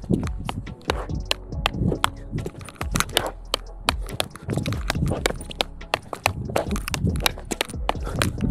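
Short wooden fighting sticks clacking against each other in quick, irregular strikes, several a second, over background music.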